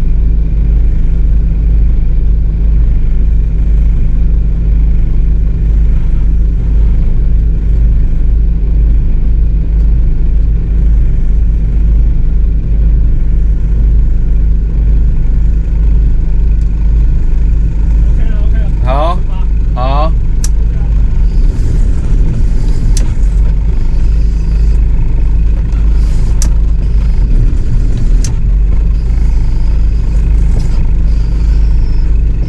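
Boat engine idling, a loud steady low drone heard inside the cabin. About two-thirds of the way through come two brief rising squeaks, followed by a few sharp clicks.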